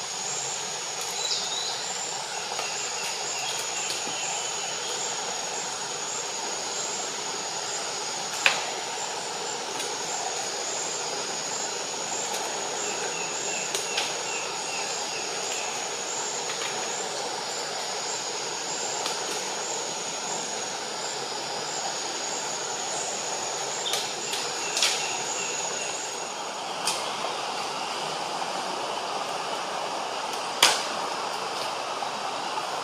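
A capuchin monkey tearing at a maripa palm: sharp snaps and cracks of breaking palm material stand out at irregular moments, the loudest about eight seconds in. Under them runs a steady forest hiss and a high, continuous pulsing insect trill that stops shortly before the end.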